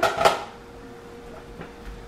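A brief clatter of cookware in the first moment, a couple of quick metallic knocks, then only a faint steady hum.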